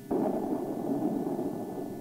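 A Maverick missile's rocket motor firing at launch: a sudden loud rushing noise that starts a moment in and slowly fades.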